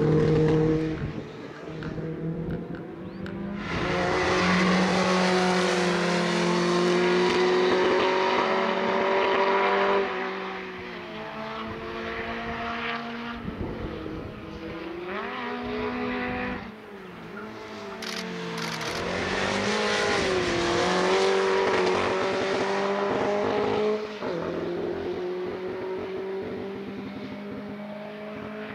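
Škoda 130 RS race car's four-cylinder engine revving hard on track, its pitch climbing through the gears and dropping and swooping under braking and downshifts, loudest in two stretches as the car passes close.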